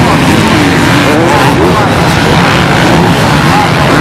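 A pack of off-road racing motorcycles riding over sand dunes, many engines overlapping in a loud, continuous din whose pitches rise and fall as the riders rev through the dunes.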